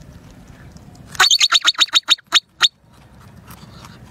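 A marmot standing upright gives a rapid series of about ten sharp, high, shrill calls over about a second and a half. The calls start about a second in, and the last two come more slowly. This is the marmot's alarm call, given as a sentinel.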